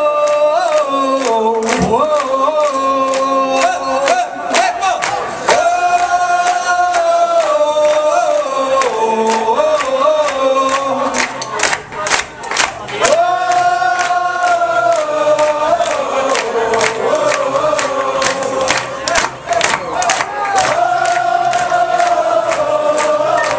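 Live band performance: several voices hold long, wordless sung notes that slide from one pitch to the next, over steady handclaps and crowd noise.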